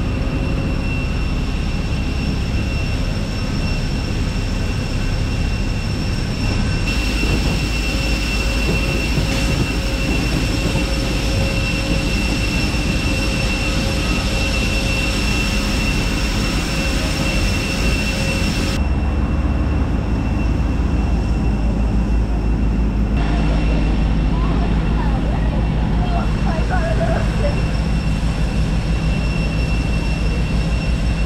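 Steady jet whine and low drone of aircraft on an airport apron, with a high whine tone running through it. The sound changes suddenly about seven seconds in and again near twenty seconds in.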